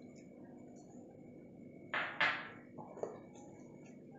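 Two quick clattering knocks of glass and steel kitchenware being set down and handled about two seconds in, followed by a softer knock, over quiet room tone.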